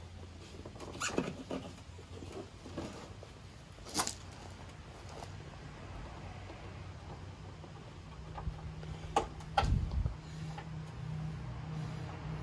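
Hand-tool and trim handling: scattered clicks, scrapes and small knocks of a socket and screw against the plastic bumper and headlight mounts as the lower screw is felt for underneath. Sharper knocks come about four seconds in and twice near ten seconds, and a low steady hum comes in partway through.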